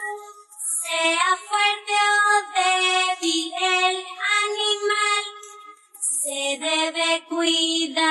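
A children's nursery song sung a cappella, with no instruments, in a high, child-like voice. There are short breaks between phrases about half a second in and near six seconds.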